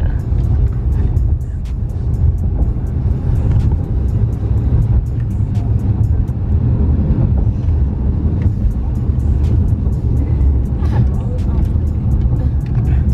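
Music from a car stereo with deep bass and a steady run of quick hi-hat ticks, over the low rumble of the car driving.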